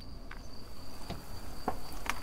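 A steady high-pitched insect trill held on one note, with a few faint ticks.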